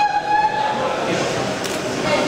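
A loud horn-like blast, one steady pitched tone lasting about a second and fading out, over hall chatter.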